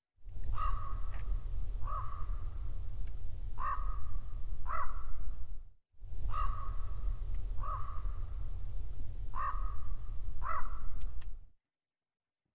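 A bird calling four times, short harsh calls with a brief held tail, over a low rumble of wind on the microphone. The same stretch of calls plays twice in a row, with a brief cut between.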